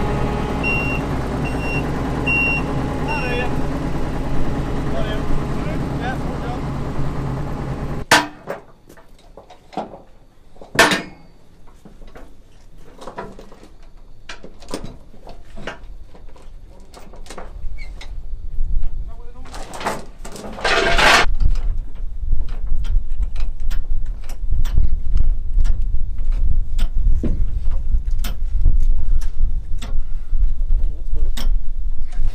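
A diesel engine running steadily, with four short high beeps about a second in. After an abrupt change at about eight seconds come scattered metal clinks and knocks of tie-down chains and binders as the machine is chained to the low loader deck, with a brief louder rattle around twenty seconds and wind rumbling on the microphone after that.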